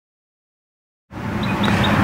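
Silence for about the first second, then steady road traffic noise from a nearby interstate starts abruptly, with faint high chirps repeating a few times a second.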